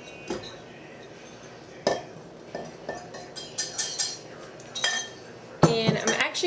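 Metal clinks and knocks of a stand mixer's attachments being handled as the whisk is swapped for the paddle, a string of separate sharp strikes that bunch together in the middle and again near the end.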